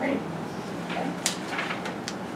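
Small handling noises in a quiet meeting room: one sharp click a little after a second in, followed by a few softer knocks and rustles.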